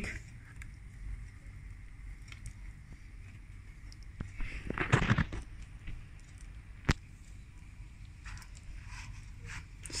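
Quiet handling sounds from hands working a kebab in beaten egg in a plastic tray: a short scraping rustle about halfway through and a single sharp click about two seconds later, over a low steady background.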